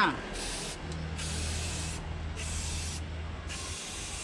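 Aerosol spray-paint can hissing in four short bursts as paint is sprayed onto a bicycle frame.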